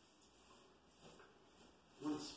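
Near silence: faint room tone with a couple of soft dabs of a paintbrush on a painted wall.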